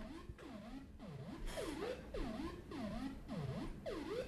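Modular synthesizer patch sequenced by an Intellijel Metropolis, playing a repeating pattern of synth notes about two a second, each note swooping in tone. The notes are quantized to the scale being dialled in on the sequencer.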